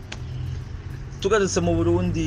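A person's voice talking, starting a little over a second in, over a steady low hum.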